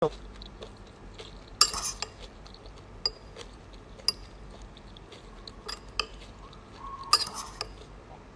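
A spoon clinking and scraping against a bowl in a string of sharp clicks, the loudest cluster about a second and a half in and another near the end.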